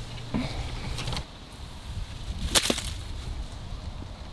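A golf iron striking the ball on a punch shot out from under a tree: a single sharp, crisp crack about two and a half seconds in.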